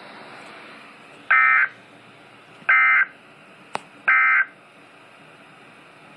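Three short NOAA Weather Radio SAME end-of-message data bursts, each a brief buzzy digital warble about a third of a second long, spaced about a second and a half apart, marking the end of the emergency alert message. Low radio hiss lies underneath, and a single sharp click falls between the second and third bursts.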